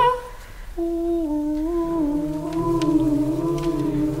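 A single voice humming a slow, sustained, gently wavering melody, coming in about a second in, just after louder singing breaks off.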